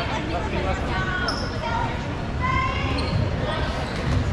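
Indoor dodgeball play: players shouting and calling to one another while dodgeballs bounce on the hard gym floor.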